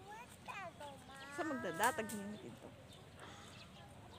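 Faint human voices, with one drawn-out, wavering call between about one and two seconds in.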